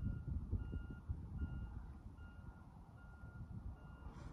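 Vehicle reversing alarm beeping, a single high tone repeated evenly about five times, over a low rumble.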